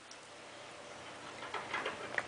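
Fairly quiet room with a few faint, light clicks and ticks, mostly in the second half.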